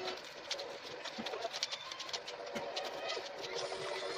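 Scissors cutting corrugated cardboard: a series of uneven, crisp snips, about two a second.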